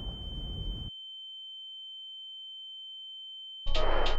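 A steady high-pitched electronic tone. Low rumble lies under it at first and cuts off just under a second in. Near the end, loud electronic music starts abruptly.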